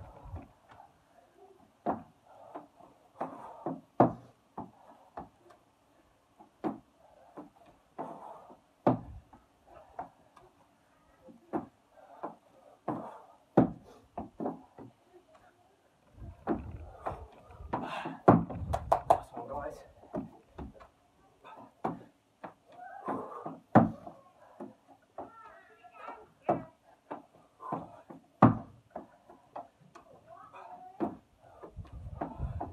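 Irregular knocks and thumps of hands, feet and body on wooden decking during push-ups and squat jumps, with bursts of a man's hard breathing in between.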